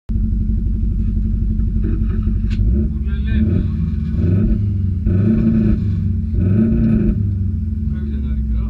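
Mitsubishi Lancer Evolution IV's turbocharged four-cylinder engine idling, heard from inside the stripped rally cabin, with a few short throttle blips in the second half.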